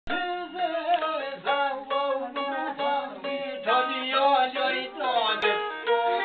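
A man singing to a small long-necked lute, the strings plucked in a quick, steady run of notes while the voice slides and bends between pitches.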